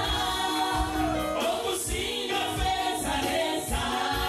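Live gospel praise and worship music: a male lead singer and a group of women singers singing together over a band with bass and a steady beat.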